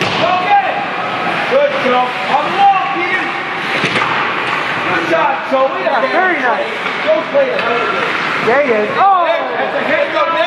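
Several voices calling and shouting over one another, echoing in an ice rink, with a few sharp knocks from the play on the ice.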